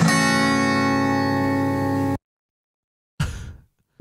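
Music sting introducing a podcast segment, ending on one long held chord that cuts off suddenly about halfway through, followed by silence and a brief soft noise.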